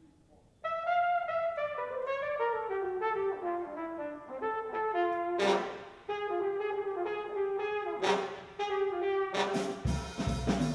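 Unaccompanied flugelhorn solo opening a big-band jazz number: starting about half a second in, a phrase of notes stepping mostly downward, broken twice by a short crash from the band, with the full band coming in near the end.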